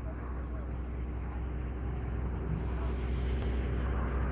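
Hydraulic excavator's diesel engine running steadily with a low hum.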